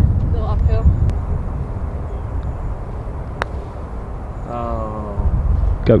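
A putter striking a golf ball: one sharp click about halfway through, over a steady low rumble. A voice calls out briefly near the end.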